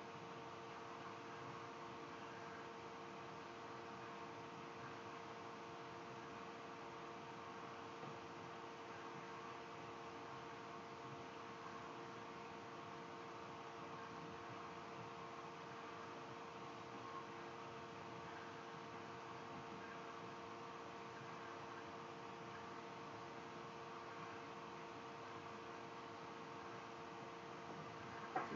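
Faint steady hum and hiss of room tone, with several constant hum tones and no distinct sounds over it.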